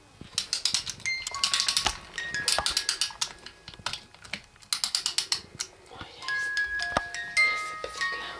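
A crib mobile's wind-up music box. There are two bouts of rapid ratchet clicking as it is wound, then its tinkling melody plays, single chiming notes a fraction of a second apart.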